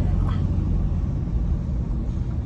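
Steady low rumble of a vehicle, heard from inside its cab.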